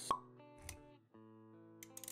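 A sharp pop sound effect just after the start over intro music with held notes; a soft low thud follows a little later, and the music drops out for a moment about halfway before coming back.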